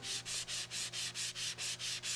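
Hand sanding: sandpaper rubbed back and forth along the edge of a wooden cutout in quick, even strokes, about four a second.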